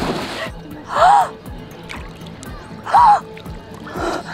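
A young woman gasping in shock: two short, rising-and-falling vocal gasps, about a second in and again about three seconds in, over faint background music.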